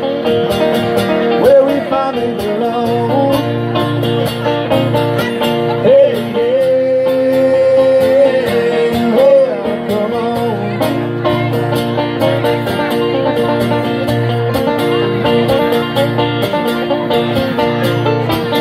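Banjo and acoustic guitar playing a bluegrass-style instrumental break, with a steady strummed pulse. One long note is held from about a third of the way in, likely a wordless vocal.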